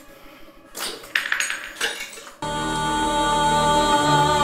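Glass clinking and crashing in a few quick strikes during the first two seconds, as shards of a smashed glass table top are thrown about. Then held, sustained music cuts in abruptly and is the loudest sound.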